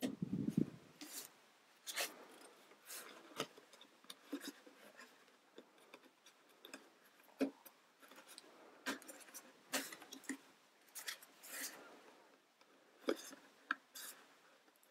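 Small plastic toy-building parts being handled and fitted together: irregular light clicks, taps and rubbing as window panels are pressed onto the frame and pinned with small pegs. A dull bump comes right at the start.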